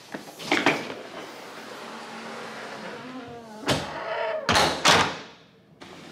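A hard-shell suitcase knocking as it is handled, then a hotel room door creaking and swinging shut with two heavy thuds about four and a half to five seconds in.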